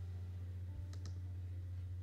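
A single short, sharp click about a second in, from the computer desk where digital drawing is going on, over a steady low electrical hum.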